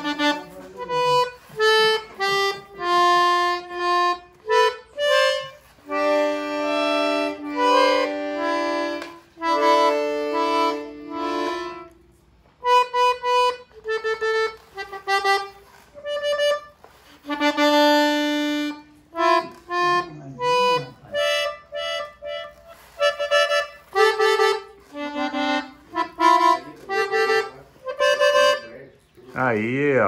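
Small child's piano accordion played by a beginner: a simple melody of separate notes and a few longer held chords, with a short pause about halfway through.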